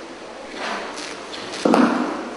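Concert-hall room noise between pieces: a few soft knocks and rustles, then a louder short thud near the end.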